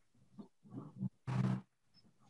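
A person's voice making two short wordless sounds, the second one louder and breathier.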